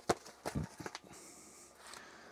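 A few light clicks and knocks of a plastic cartridge storage case being handled and opened, bunched in the first second, then only faint room hiss.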